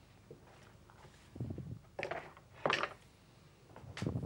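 A few knocks and clattering rattles of equipment being handled at an electronic keyboard, the sharpest about two and three-quarter seconds in.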